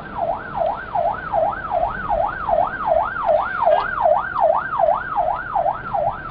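Emergency siren in a fast yelp, its pitch sweeping up and down evenly about two to three times a second.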